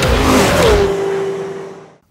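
Closing sting of a TV car show's intro music: a loud burst mixed with an engine-revving sound effect, then one held note that fades away.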